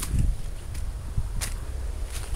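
Low rumble of wind on the microphone, with two sharp clicks: one at the start and one about a second and a half in.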